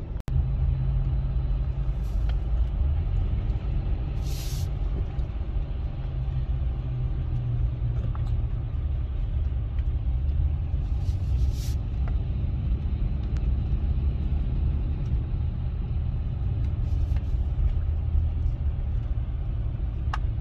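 Steady low rumble of a pickup truck's engine and tyres heard from inside the cab while driving on a snowy road, with a couple of brief high hisses about four and eleven seconds in.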